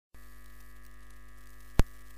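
Steady electrical mains hum with a single sharp click near the end.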